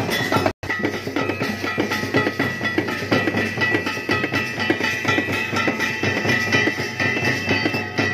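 Kirtan percussion: drum beats in a fast steady rhythm under the ringing of small hand cymbals. The sound drops out completely for an instant about half a second in.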